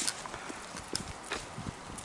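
Peg stilt tips knocking on an asphalt driveway with each step, a hard clop about twice a second.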